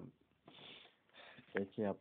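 A speaker's short audible in-breath, a breathy hiss, in a pause between spoken phrases. Speech resumes about one and a half seconds in.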